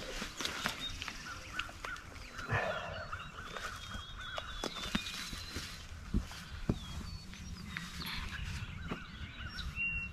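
Outdoor birds calling, with repeated short chirps and warbling notes, over scattered light clicks and rustles.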